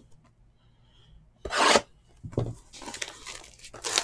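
Clear plastic shrink wrap being torn off a sealed trading-card box. There is a sharp rip about a second and a half in and a shorter one soon after, then a crinkling, scratchy rustle as the film is pulled away.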